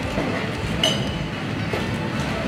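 Busy clatter of bar work behind the counter, with a short glassy clink about halfway through.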